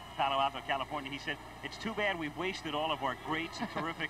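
Speech only: a man talking at a lower level than the hosts, most likely the 1980 TV broadcast's play-by-play announcer under the game footage.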